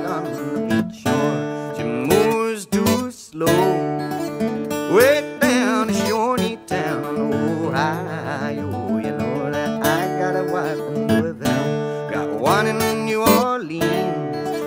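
Instrumental passage on acoustic guitar, its melody notes sliding up in pitch over sustained bass notes.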